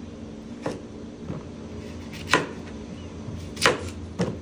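Kitchen knife slicing through tomato and onion on a plastic cutting board: a few sharp knocks of the blade meeting the board, irregularly spaced, the loudest near the end, over a faint steady hum.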